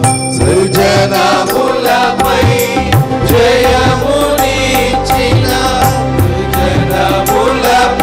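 A group of men and women singing a hymn together through microphones, with keyboard accompaniment and a regular drum beat underneath.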